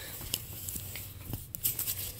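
Light rustling and a few soft clicks and taps from plush toys being handled and moved across a fabric bedspread.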